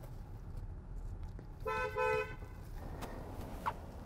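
Car horn, a Bentley's, giving two short toots back to back about a second and a half in, over the low rumble of the moving car.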